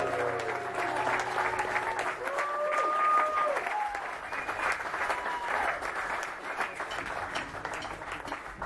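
Audience applauding and cheering with scattered whoops after a song ends. The band's last low note dies away in the first couple of seconds, and the clapping thins toward the end.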